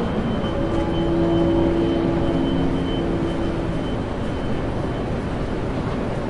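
Railway station ambience: a steady rumble of trains and station noise, with a low pitched tone held for about three seconds in the first half and a thin high whine that fades out about two-thirds of the way through.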